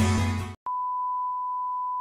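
Electronic intro music ends about half a second in. After a brief gap, a steady single-pitched beep sounds for about a second and a half: the test-pattern tone that goes with TV colour bars.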